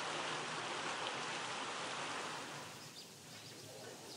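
Steady outdoor ambient noise, an even hiss like wind or distant water, which gives way to quieter, softer room ambience about two seconds in.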